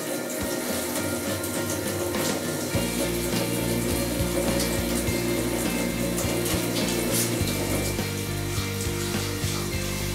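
Kitchen tap running into a stainless steel sink as hands are washed under the stream, over a sustained background music score whose low notes shift about three seconds in and again about seven seconds in.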